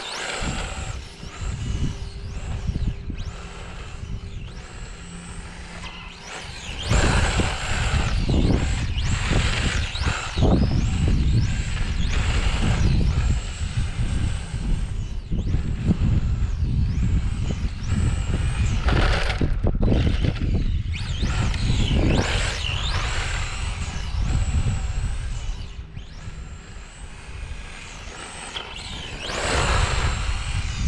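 Brushless electric motor of a radio-controlled touring car whining, its pitch repeatedly rising and falling as the car accelerates and slows. A heavy low rumble is louder through the middle of the stretch.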